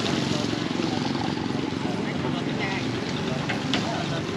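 Small motorbike engines idling steadily, with people talking in the background.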